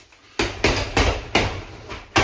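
Boxing gloves punching a hanging heavy bag: four sharp thuds landing within about a second, starting about half a second in.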